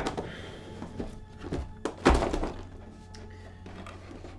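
Black plastic insert tray being worked loose and lifted out of a cardboard board-game box: a few light knocks, then one louder thunk about two seconds in. Soft background music plays underneath.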